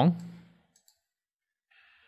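A man's voice trailing off on a drawn-out word in the first half-second, then near silence with a faint click a little under a second in and a soft breath near the end.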